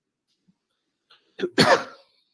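Quiet at first, then a person coughs, loud and short, near the end.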